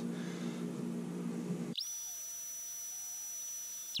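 Black and Decker heat gun running with a steady hum and rush of air while a spinner lure is heated for powder painting. Nearly two seconds in, the sound switches abruptly to a steady high whistle over a hiss, which stops suddenly at the end.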